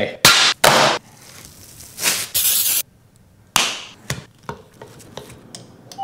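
Metal sheet tray knocked twice as it is lifted, then a burst of rustling, and a sharp knock with a short ringing tail followed by a few light clicks of kitchen handling.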